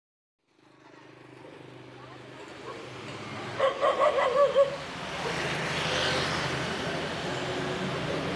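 Street traffic with a motorbike engine running and passing, fading in from silence and growing louder. About three and a half seconds in, a dog barks a few times in quick succession.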